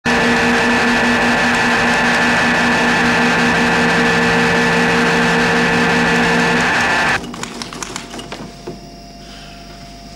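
Loud, harsh electronic noise with several steady tones and a pulsing low tone, played through a horn loudspeaker, cutting off suddenly about seven seconds in. Faint clicks and a steady hum remain.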